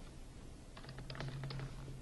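Computer keyboard typing: a quick run of about half a dozen keystrokes about a second in.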